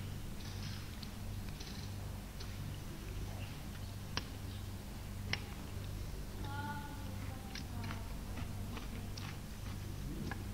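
A low, steady hum runs underneath, with two sharp clicks of metal cutlery on plates about four and five seconds in and a few fainter clicks later while two people eat.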